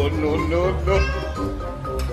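A domestic cat meowing several times in quick succession, each call bending up and down in pitch, over background music with a steady bass.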